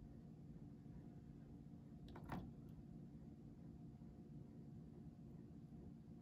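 Near silence: room tone, with one faint click a little over two seconds in.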